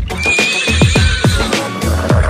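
Horse whinny sound effect, a wavering high call that steps down and falls away over about a second and a half, over electronic dance music with a steady kick drum at about four beats a second.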